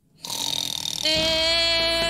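The opening of a radio commercial. After a short gap comes a faint rough sound, then about a second in a voice holds one long, steady note that leads into a sung jingle.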